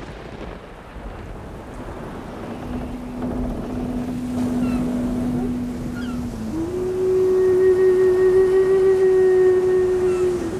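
Steady rush of river water, with long held musical notes over it: a lower note from about three seconds in, then a louder, higher note with overtones from about six and a half seconds.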